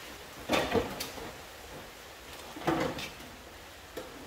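Handling knocks and scrapes of a loose car front wing (fender) panel being offered up to the car body for a test fit: two short bursts, about half a second in and again near three seconds in, with a small click between.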